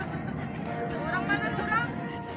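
Indistinct voices of people talking nearby, with music playing in the background.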